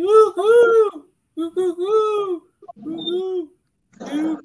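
A person's voice imitating a pigeon's cooing: drawn-out, arching coos in three bursts.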